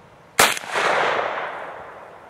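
A single shot from a Tippmann Armory rolling block rifle: a sharp crack about half a second in, followed by a long echo that fades away over more than a second.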